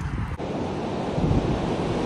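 Sea surf breaking and washing, mixed with wind buffeting the microphone: a steady rushing noise.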